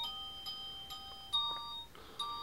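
Bell-like musical notes played one at a time, a new note about every half second, each ringing on until the next.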